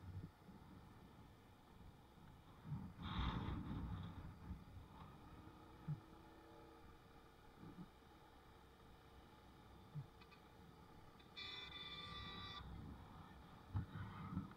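Faint, muffled rumble of a moving motorbike, engine and road noise together, with a louder burst of noise about three seconds in and a few light knocks. Near the end, a steady high-pitched tone sounds for about a second.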